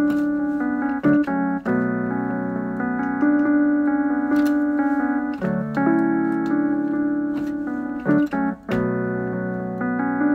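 Slow keyboard music: sustained piano chords that change every few seconds, with short breaks about a second in and again just after eight seconds.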